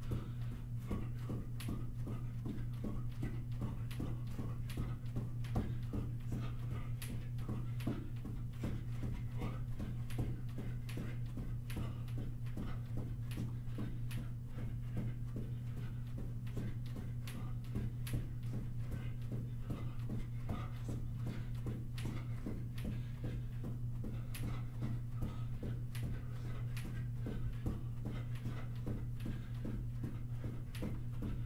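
Footfalls of a person jogging in place on a carpeted floor: soft, even thuds about three a second, over a steady low hum.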